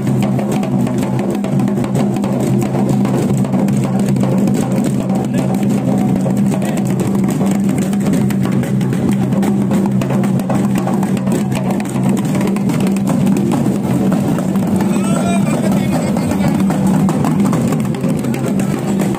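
Loud, fast, steady drumming with music and voices, accompanying the swinging dance of a goddess's carried palanquin (doli). A steady low drone runs beneath the beat.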